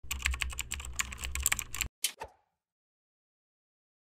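Computer keyboard typing: a quick run of keystrokes for about two seconds, stopping short, then two more clicks a moment later.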